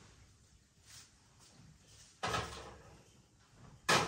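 Faint sounds of beer being drunk from a pint glass, a brief noisy rush about two seconds in, and a sharp knock near the end as the glass is set down on the bar.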